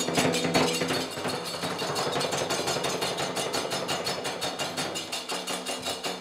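Nanbu kagura accompaniment: small hand cymbals (kane) and taiko drum play a rapid, even beat of metallic strikes, over a held low tone.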